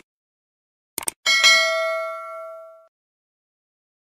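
Subscribe-animation sound effect: two quick mouse clicks about a second in, then a bright notification bell ding that rings out and fades over about a second and a half.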